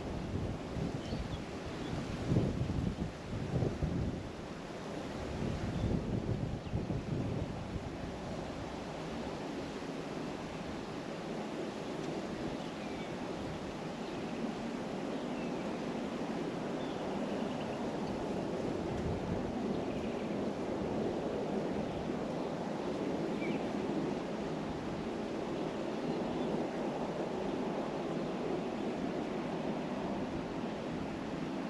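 Wind blowing across an outdoor microphone: a steady rushing, with heavier buffeting gusts in the first several seconds. A few faint high chirps sound now and then.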